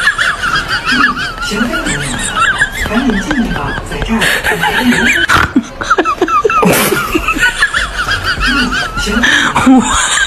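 Sustained laughter, high-pitched and wavering. Lower chuckles and a few short bursts of noise run underneath, one a little past four seconds, others near five and a half, seven and nine seconds.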